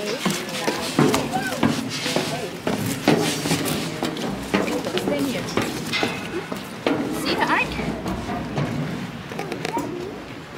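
Footsteps on steel diamond-plate stairs and a metal platform, a run of irregular sharp knocks, with voices of people chattering around them.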